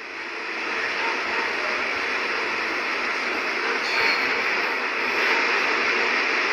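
A steady rushing noise with no speech, swelling slightly over the first second and then holding level.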